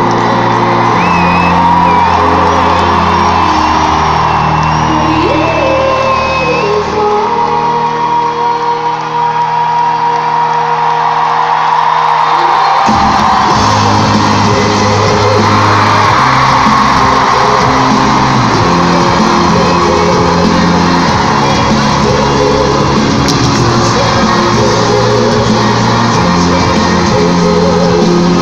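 Live pop song played by a band with a singer, loud in an arena and picked up from the stands, with shouts and whoops from the crowd. The bass drops away for a few seconds about ten seconds in, then the full band comes back in.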